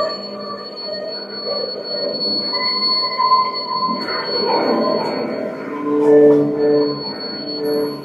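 Live electroacoustic free-improvised music played on laptops and electronics: layered, shifting electronic tones over a steady high-pitched tone. About halfway through the texture thickens, and near the end a few pulsing notes repeat.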